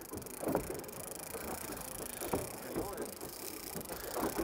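Quiet ambience on an open fishing boat: low, steady wind and water noise, with a few faint, brief voices or knocks.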